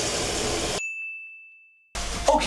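Washing machine filling with water, a steady rush that fades, then cuts off suddenly. A single high bell-like ding rings on for about a second.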